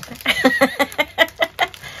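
A woman laughing: a quick run of short 'ha' pulses, about six a second, dying away near the end.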